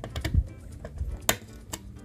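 Screwdriver clicking on the screw terminals of a metal-cased power supply's terminal block as the screws are loosened: a few light, irregular clicks, with a sharper one just past the middle.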